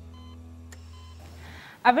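The tail of a TV programme's theme music: a held low synth tone with two short, faint electronic beeps, cutting off about a second and a half in. A woman's voice starts speaking just before the end.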